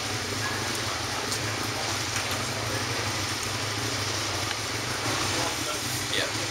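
Lexus LFA's V10 engine idling steadily, a low even hum with no revving, under background voices and outdoor noise.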